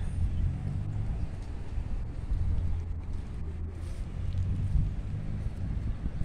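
Wind rumbling on the microphone: a steady low rumble with no distinct events.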